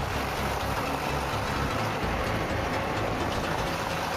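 A vehicle crossing a long wooden plank bridge: steady rumbling and rushing road noise with no let-up.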